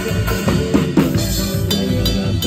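Live band music driven by a drum kit: snare, bass drum and cymbal hits played in a steady rhythm under pitched instruments.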